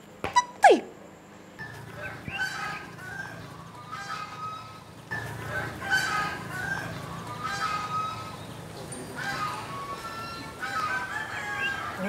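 Chickens clucking, with a rooster crowing, as farmyard ambience; the calls begin about a second and a half in and keep coming in short, repeated bursts. Just before them comes a brief, loud falling glide in pitch.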